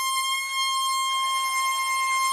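Trumpet holding one long, steady high note, played alone without the band.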